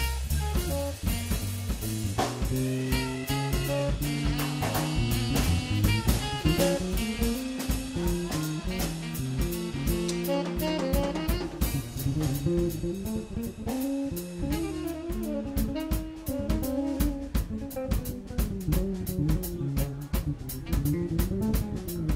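Live jazz-funk band playing: tenor saxophone over bass guitar and a drum kit groove.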